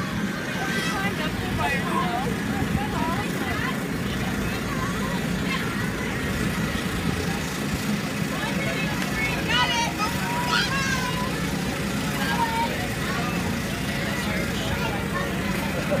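The electric blower of an inflatable bounce-house slide running with a steady drone. Children's voices and high shouts come and go over it, busiest about nine to eleven seconds in.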